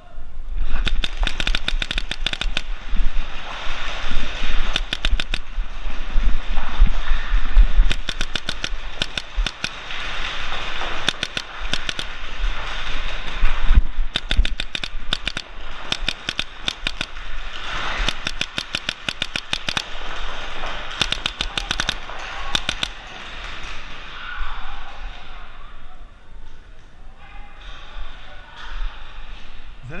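Paintball markers firing rapid strings of shots, burst after burst, in a large indoor hall. The firing thins out over the last several seconds.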